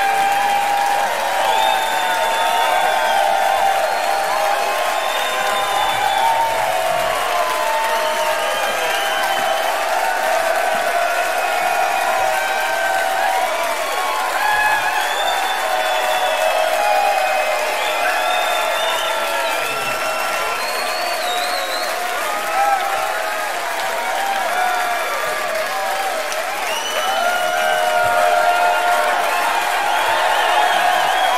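Concert audience applauding and cheering steadily, with whoops, shouts and whistles throughout.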